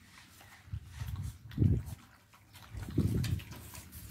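Dog making low, grunting growls in three short bursts: about a second in, around a second and a half, and around three seconds.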